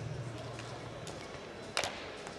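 Faint indoor arena ambience with a low steady hum that fades about a second in, then a single sharp click near the end.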